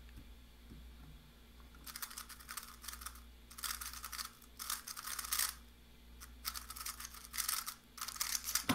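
3x3 speed cube being turned fast: runs of rapid plastic clicking and rattling from the turning layers. Starting about two seconds in, there are four runs of about a second each with short pauses between.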